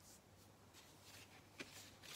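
Faint rustling of a paper picture sleeve as a 7-inch vinyl single is handled and slid out, with one small click about a second and a half in.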